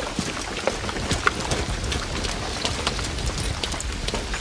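Heavy rain falling steadily, with many scattered small clicks and knocks through it.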